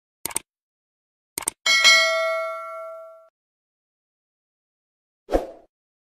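Subscribe-button animation sound effect: two pairs of quick mouse clicks, then a notification bell ding that rings out for about a second and a half. A single short thump comes near the end.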